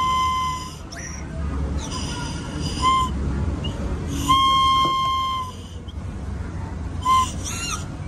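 Whistle lollipop (Melody Pop candy whistle) blown in four toots on the same steady note: one as it begins, a short one about three seconds in, a longer one of about a second and a half around the middle, and a short one near the end.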